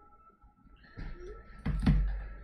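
Rustling handling noise about a second in, then a dull knock near the end, as the painter's hand and brush come down at the canvas lying on the desk.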